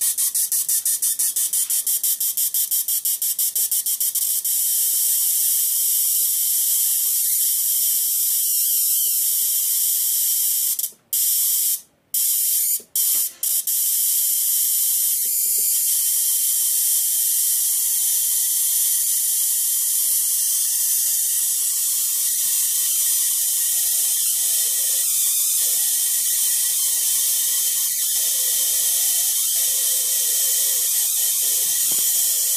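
Spark gap of a homemade high-frequency Oudin/d'Arsonval coil apparatus firing. It starts as a fast, even run of sharp clicks that blends into a steady high hiss after about four seconds, and the hiss cuts out briefly three times around the middle.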